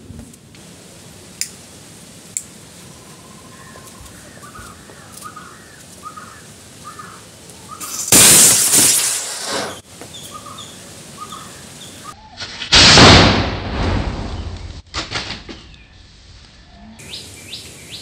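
Firecracker rocket (Diwali sky rocket) firing with a loud hissing whoosh about eight seconds in, lasting about two seconds, as it launches the cardboard plane; a second, similar loud hiss comes about five seconds later. Birds chirp faintly before the first hiss.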